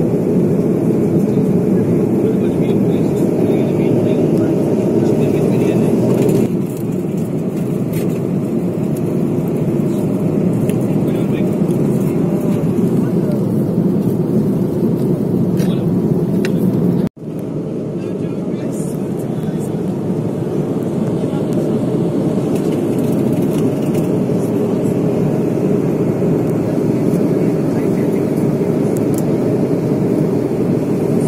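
Steady airliner cabin noise in flight: a constant dull rush of engines and airflow. It steps down slightly about six seconds in and drops out for an instant at about seventeen seconds.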